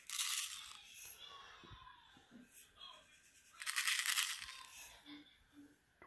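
Kosher salt being poured onto a clear plastic tray on a digital kitchen scale: two short pours of grains onto the plastic, one right at the start and one about four seconds in.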